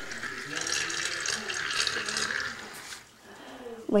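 Water rushing and swirling inside a water tornado maker's cylinder. The noise stops about three seconds in.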